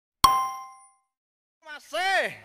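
A single bright metallic ding, an intro-card sound effect, struck about a quarter second in and ringing out over about half a second. Near the end a man's voice begins.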